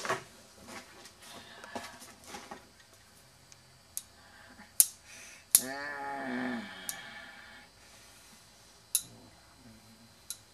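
Small metal tools clattering and clicking as they are handled, with single sharp clicks every second or two. In the middle comes a pitched, wavering cry about two seconds long.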